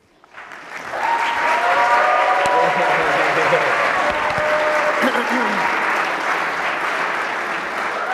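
Audience applauding. It builds up over the first second, holds steady, then eases off slightly toward the end, with a few voices heard over it early on.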